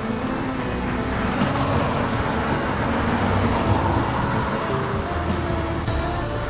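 Road traffic noise, with a vehicle passing that swells in the middle, under background music with held notes.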